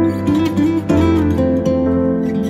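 Acoustic guitar music: an instrumental passage with a melody moving over held chords and a sustained bass.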